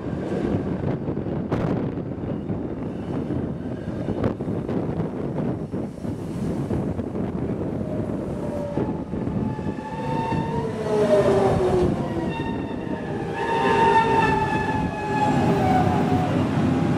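Rhaetian Railway Bernina line train running, heard on board: a steady rumble with wheels clicking over rail joints. From about halfway, shrill tones slide down in pitch and grow louder.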